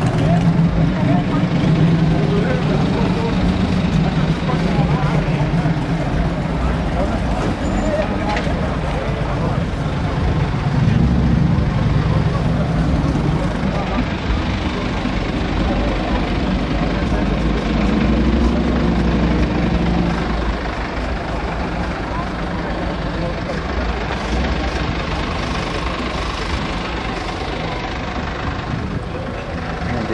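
A motor vehicle engine idling steadily close by, with people talking in the background; it gets a little quieter about two-thirds of the way through.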